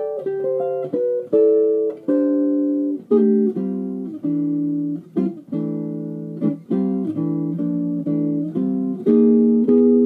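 Hollow-body archtop electric guitar playing a chain of chords and short licks voiced in fourths. Several notes ring together on each stroke, changing about once or twice a second, in short phrases with brief breaks.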